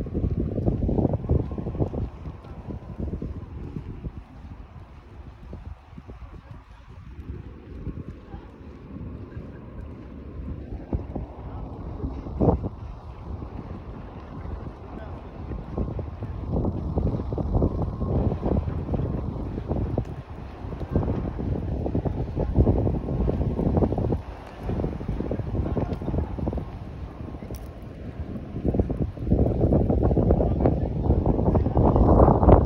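Wind buffeting a phone's microphone: an uneven, gusty low rumble that eases off a few seconds in and builds again near the end.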